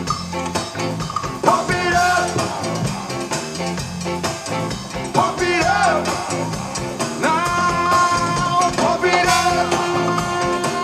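Live band playing an upbeat groove on electric bass, drum kit and congas, with saxophone and trombone and a singer. Long held melodic notes ring over the beat in the second half.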